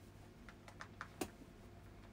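Faint, scattered clicks and taps, about five of them, from handling a portable music player and its earphones.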